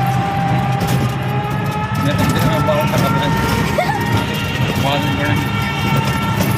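Engine running and road noise of a moving passenger vehicle, heard from inside its canvas-roofed cabin: a steady low hum with a constant higher whine over it.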